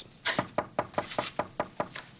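Rapid knocking on a door, about nine quick, evenly spaced knocks at roughly five a second.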